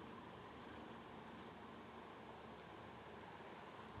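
Near silence: faint steady room tone and microphone hiss.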